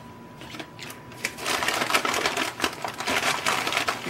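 Paper bag and packaging rustling and crinkling as a hand rummages inside, a dense run of small crackles starting about a second in.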